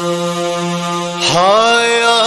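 Sung Urdu Muharram lament (nauha) for Hussain played over loudspeakers. One long held note gives way, just after a second in, to a new note that slides upward and wavers slightly.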